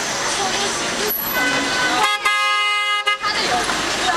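A vehicle horn sounds one steady honk lasting about a second, past the middle, over busy street noise.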